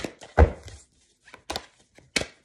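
Tarot cards being handled against a hard surface: a few sharp, irregular knocks, the loudest with a dull thump about half a second in.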